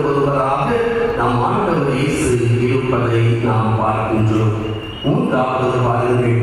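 A man's voice in long, drawn-out phrases with held pitches, a chanting delivery, with a short pause about five seconds in.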